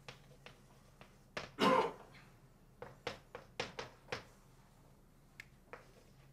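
Chalk tapping and clicking against a blackboard as words are written, in irregular short strokes, busiest about three to four seconds in. A brief voice sound about a second and a half in is the loudest thing heard.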